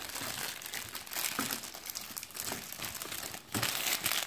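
Clear plastic wrapper crinkling and rustling as a coiled telephone handset cord is worked out of it by hand, with a sharper crackle about three and a half seconds in.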